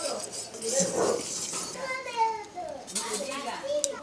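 Dry spice seeds being stirred and scraped with a wooden spatula in an iron wok, a light scratchy rustle, with faint voices in the background.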